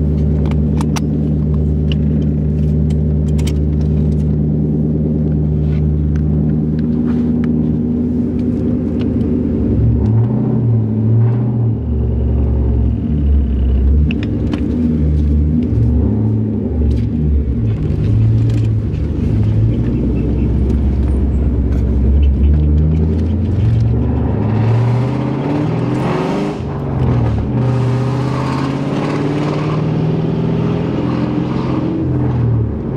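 A 1996 Ford Mustang GT's 4.6-litre V8, heard from inside the cabin, idling steadily for the first several seconds. From about ten seconds in it pulls away and accelerates, its pitch rising and dropping again and again as it goes up through the gears.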